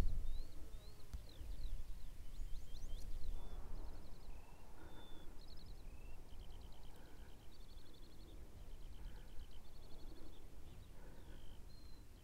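A small songbird singing a long, varied song of quick trills, short whistled notes and slurred phrases, over a low steady rumble.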